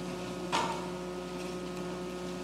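Room tone with a steady electrical hum, broken by one brief sharp sound about half a second in.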